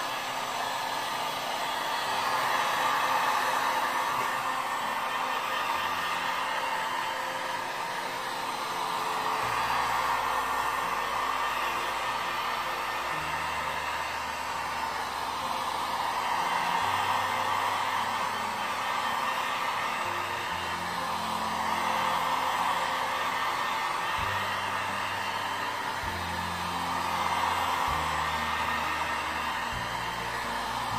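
A handheld hot-air blower running steadily, its rush of air swelling and fading every six seconds or so as it is swept back and forth.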